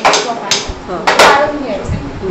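A few sharp clinks and knocks of steel kitchen utensils and a steel bowl, with voices talking underneath.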